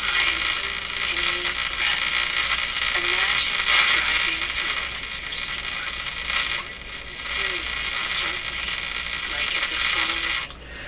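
Stewart Warner R514 tube radio's loudspeaker giving a steady hiss and crackle of static as the set is tuned, with a few faint brief tones in the noise.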